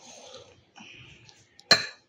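Dishes being handled and shifted on a wooden tray, soft at first, then one sharp clink of crockery near the end.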